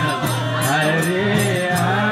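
Hari kirtan: voices singing a Hindu devotional chant, the melody gliding up and down, over hand percussion keeping a quick, steady beat.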